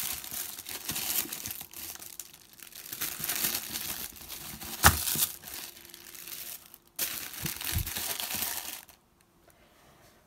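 Tissue paper rustling and crinkling as it is handled inside a cardboard box, with one sharp tap about halfway through and a softer knock a little later. It falls quiet near the end.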